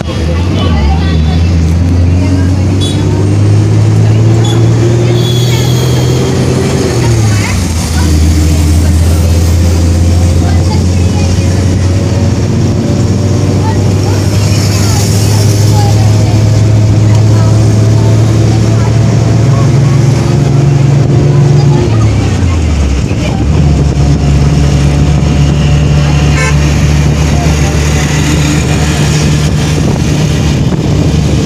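Engine of the road vehicle carrying the camera, running loudly. Its pitch rises as it accelerates over the first few seconds, falls sharply about seven seconds in as it changes gear, holds steady, then drops again a little past twenty-two seconds.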